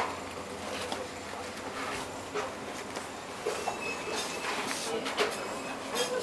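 Busy shop ambience: a steady background hum and hubbub with faint, indistinct shoppers' voices and occasional clicks and rustles. A short high tone sounds a little past halfway.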